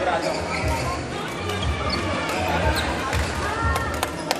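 Badminton rally on an indoor court: sharp racket strikes on the shuttlecock, a few of them close together near the end, with short shoe squeaks on the court floor, over the babble of voices in a busy sports hall.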